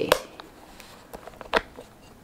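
The metal clasp of a vintage Hermès bag being worked shut to lock it: a sharp click just after the start, then a few small clicks and taps, with a louder one about one and a half seconds in.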